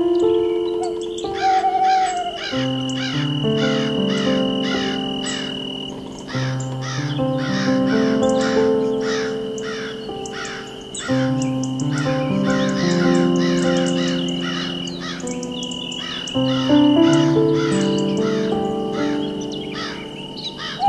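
Slow ambient music of held, shifting chords with bird calls layered over it: short descending calls repeated rapidly, about three a second, with a steady high whistle-like tone running beneath them.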